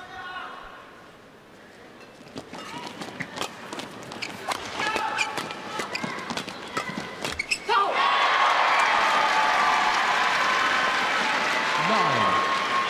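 Badminton rally: the shuttlecock is struck back and forth with sharp racket hits. About eight seconds in the point ends and the arena crowd breaks into loud cheering and applause.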